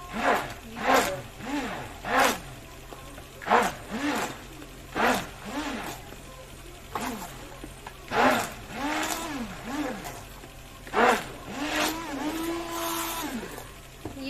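Electric hand blender pulsed in a bowl of curd and water, its motor whirring up and back down in short bursts about once or twice a second, then running longer near the end as the raita is whipped smooth. Each burst starts with a slap of churned liquid.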